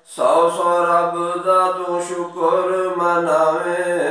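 A man's voice singing a naat in one long phrase of held, slowly bending notes, beginning right after a short breath.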